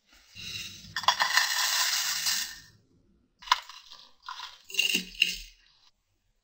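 Brown sugar poured from a glass jar into a glass teacup, a granular hiss lasting about two seconds. Then a sharp knock and several short clatters as glassware is handled on a kitchen scale.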